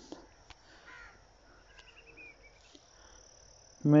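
Quiet background in a pause between speech, with a faint, steady high-pitched tone throughout and a faint click about half a second in.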